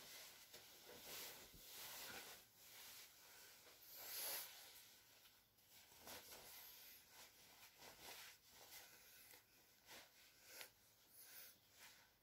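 Faint, irregular rustling of clothing as a quilted jacket is pulled on over the shoulders and a shirt is buttoned.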